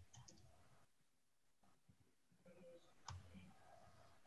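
Near silence: faint room tone with a few soft clicks, some near the start and a sharper one about three seconds in.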